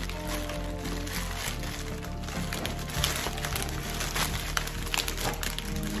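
Plastic packaging crinkling and crackling as a bouquet in a plastic sleeve is pulled out of bubble wrap, over background music.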